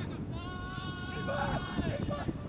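A single long shouted call from a person, held at one pitch for about a second and a half, over a low rumble of wind on the microphone.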